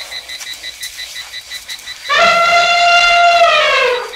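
Elephant trumpeting, used as a mammoth's call: one loud, held blast starting about halfway in, lasting about two seconds and falling in pitch as it ends.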